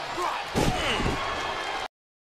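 A wrestler slammed face-first onto the wrestling ring mat by the Sister Abigail finisher: a loud, booming impact about half a second in, a second hit just after and the ring ringing on, over steady arena crowd noise. The sound cuts off suddenly near the end.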